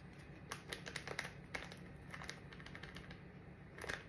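A paper packet of ground cinnamon being tapped and shaken over a bowl: faint, irregular light taps, a dozen or so in the first couple of seconds and a few more near the end.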